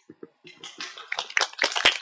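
Audience applause starting: a few scattered claps from about half a second in, quickly building into full applause near the end.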